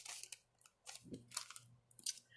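Faint rustling of paper being handled and laid down on a table: a few short, crisp paper rustles.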